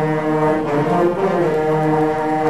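Brass band music with long held notes.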